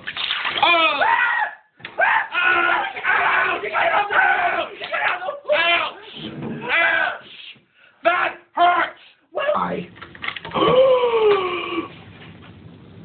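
A person's voice in a run of bursts, exclaiming or vocalizing with wide sweeps up and down in pitch, with short pauses between the bursts.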